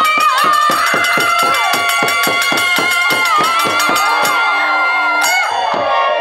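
Bengali kirtan music: two khol drums beaten in a fast, even rhythm with jingling kartal hand cymbals, under a woman singing to a harmonium. The held sung note ends near the end while the drums and cymbals carry on.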